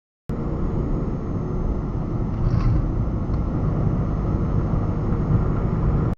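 Steady road and engine rumble inside a moving car, picked up by a dashcam's microphone. It starts abruptly just after the start and cuts off abruptly at the end.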